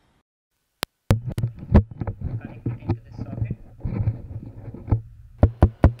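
The sound cuts to dead silence as a 3.5 mm jack is plugged into the camera's mic socket, with one click about a second in. A homemade dynamic microphone with a business-card diaphragm then takes over, picking up a low hum and handling knocks and rustles, with several sharp taps near the end.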